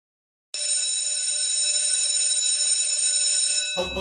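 After a brief silence, a steady, high electronic tone starts suddenly and holds unchanged for about three seconds. It cuts off near the end as intro music with a deep bass begins.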